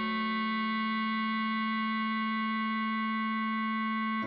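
Bass clarinet holding a single long, steady note, a whole note in the melody.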